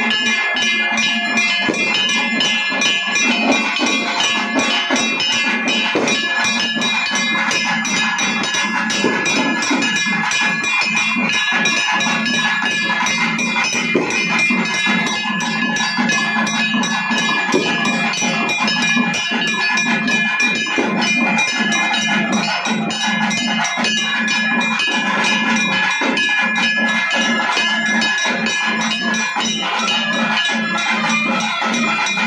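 Tamil temple-festival drum band (melam) playing a fast, dense rhythm without pause. Steady bell-like metallic ringing runs over it, breaking off and resuming every few seconds.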